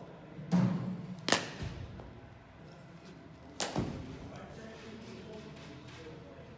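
Cricket ball knocks during batting practice with a one-inch-wide training bat: a dull thud about half a second in, a sharp crack of ball on bat about a second in, and another sharp knock about three and a half seconds in.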